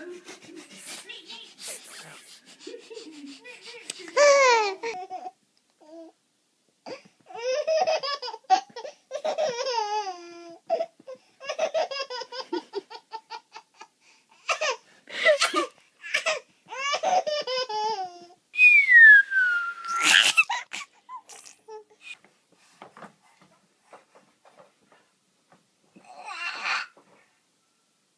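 A one-year-old baby laughing in repeated bursts of belly laughs and giggles. About two-thirds of the way through comes a high squeal falling in pitch, followed by the loudest laugh.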